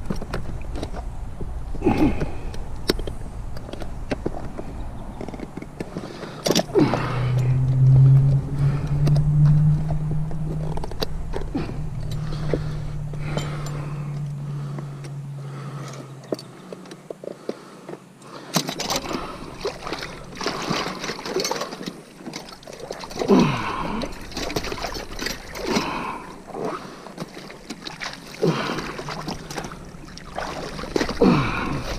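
Water splashing and sloshing as gloved hands work a trapped beaver and its steel trap in shallow water, with scattered knocks from the handling. A steady low hum runs through the middle for several seconds, from about seven seconds in until just past the middle.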